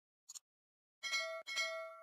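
Subscribe-animation sound effects: a short mouse click, then two quick metallic chime strikes of a notification bell sound effect about half a second apart, the second ringing on.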